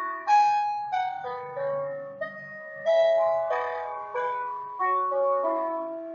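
Background instrumental music: a slow keyboard melody, with groups of notes struck about every two seconds and left to fade.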